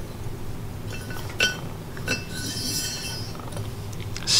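Steel engine valve, its face smeared with lapping compound, sliding into its guide in an aluminium cylinder head. There is a sharp metallic clink about a second and a half in, then a couple of seconds of light, ringing metal-on-metal scraping.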